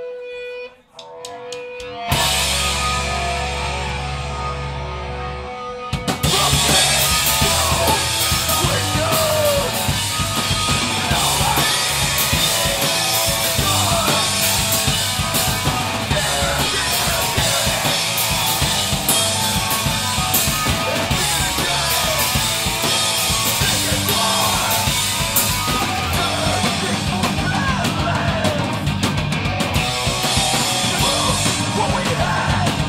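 Live hardcore band starting a song. After a brief pause, a single low chord rings out and is held for a few seconds. About six seconds in, the full band comes in with drums and distorted electric guitars, over shouted vocals.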